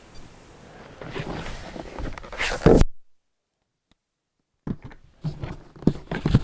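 Rustling and knocks from a large hard plastic drone case being handled on a wooden deck. The sound stops abruptly for nearly two seconds of dead silence, then comes back with short clicks and knocks as hands work the case's buckle latches.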